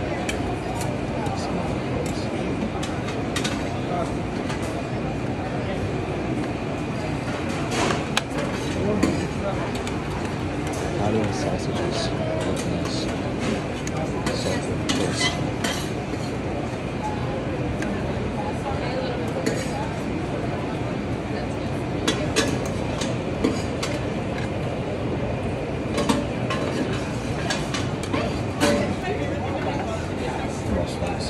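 Metal serving spoons clinking and scraping against steel buffet pans and a plate, with scattered sharp clinks over a steady murmur of background chatter.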